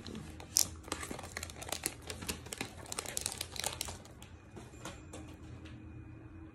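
Seal strip being torn off an iPhone box, with packaging crinkling in the hands: a quick run of crackles and rustles that dies down about four seconds in.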